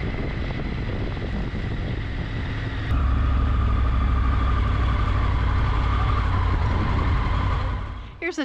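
Motorcycle engine and wind noise heard from a camera mounted on the bike while riding slowly, a steady rumble with a faint whine that gets louder about three seconds in.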